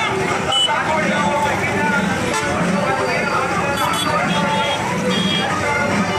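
Busy street noise: several people talking and calling out over passing motorbikes and traffic, with a short horn toot about half a second in.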